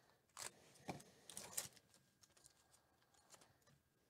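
Faint crackling and tearing of a Topps Gold Label card pack's wrapper being torn open by hand, in a few short crackles during the first two seconds, then only light ticks as the cards are handled.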